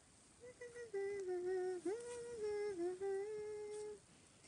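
A young woman humming a tune with her mouth closed: a string of held notes that step up and down, with one quick slide upward midway. It starts about half a second in and stops abruptly just before the end.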